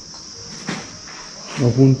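Crickets trilling, a steady high chorus, with a light click about a second in and a voice starting to speak near the end.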